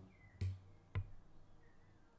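Two short, soft knocks about half a second apart over a faint low hum.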